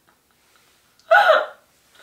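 Near silence, then a single short burst of laughter about a second in.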